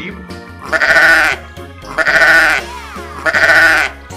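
Sheep bleating three times, each bleat about two-thirds of a second long with a wavering pitch, over background music.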